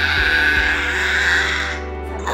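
A woman's long, loud scream, held high and breaking off near the end, as she bears down in the final push of childbirth. Background music plays underneath.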